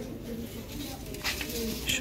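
Indistinct low voices murmuring in the background, with no clear words.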